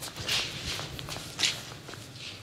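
Shuffling footsteps and scuffling as people are moved about on foot, with two louder scuffs: one about a third of a second in, one a little after halfway.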